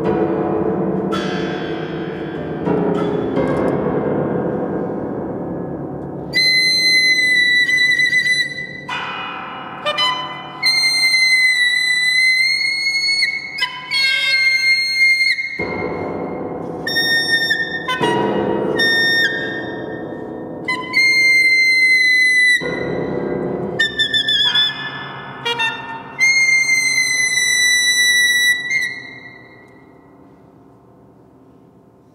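Soprano saxophone and Kawai grand piano in a contemporary duo, ringing in a reverberant hall. For the first few seconds there are low, ringing piano sounds made by the pianist playing on the strings inside the instrument. From about six seconds in, the saxophone holds long, very high notes in short phrases that alternate with the piano.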